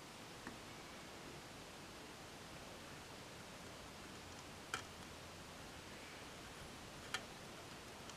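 Faint room hiss while a wire is soldered onto a guitar pedal's input-jack lug, with two light clicks of the iron and solder against the lug, one about halfway through and one near the end.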